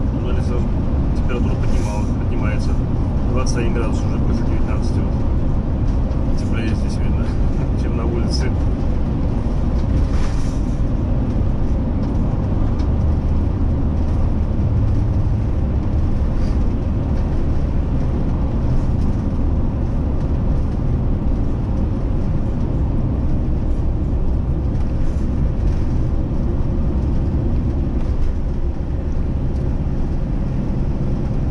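Steady low road and engine rumble heard from inside a moving motorhome's cab, driving through a road tunnel. A few short faint ticks come in during the first ten seconds.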